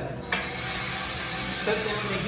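Small drum coffee roaster dropping its batch of roasted beans out of the drum at the end of the roast. A steady rushing hiss of pouring beans and air starts suddenly about a third of a second in.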